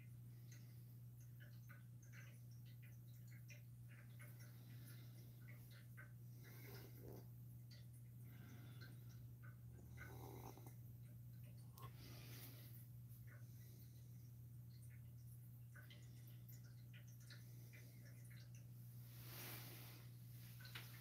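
Near silence: a faint steady low hum with scattered faint ticks.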